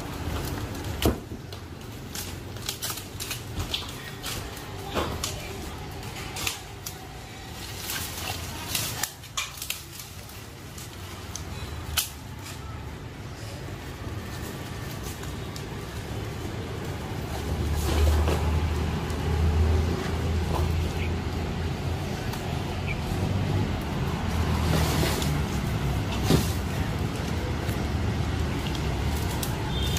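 Scattered snaps, knocks and rustles of branches and leaves as a man climbs through a large fig tree, many of them close together in the first half. About two-thirds of the way through, a steady low rumble comes in and grows louder.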